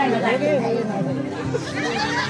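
Several voices talking over each other through stage microphones, with the backing music stopped.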